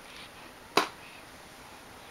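A single sharp click of hard plastic about a second in, as a baby's hands work a plastic activity toy.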